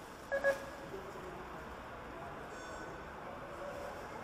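Metro turnstile card validator beeping twice in quick succession as a fare card is tapped, two short steady electronic tones, over the low background hum of the station.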